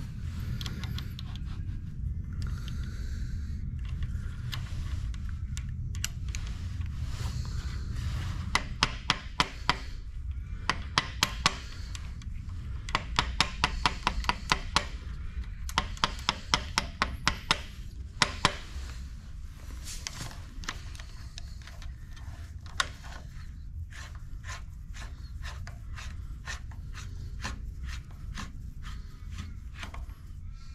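Screwdriver turning a gib adjusting screw into a lathe cross slide: bursts of quick small metallic clicks and scrapes, several a second, starting about eight seconds in, over a steady low hum.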